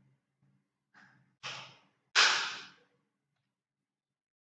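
A man breathing out heavily into a close microphone: three sighing exhales, starting about a second in, the last and loudest just after two seconds.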